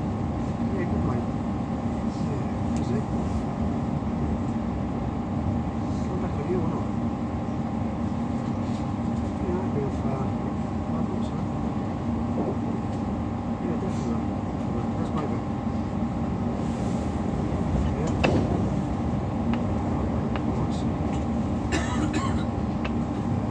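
Interior running noise of a Class 345 electric train at speed: a steady rumble of wheels on rail under a steady electric hum, with occasional light clicks and one sharper knock late on.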